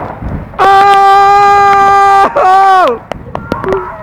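A person's long, loud shout held on one pitch for about a second and a half, followed at once by a second, shorter shout that falls away in pitch. Clicks and splashy rain noise run underneath.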